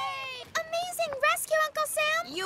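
Background music dying away, then a cartoon character's voice calling out in short, quick syllables.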